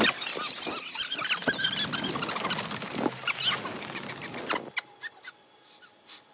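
Several very young kittens squeaking and mewing at once in thin, high-pitched cries, many overlapping. About four and a half seconds in, the cries die away to a few faint squeaks.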